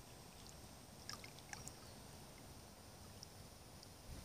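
Near silence: faint lapping of pool water around feet dangling in it, with a few small ticks of splashing a little over a second in.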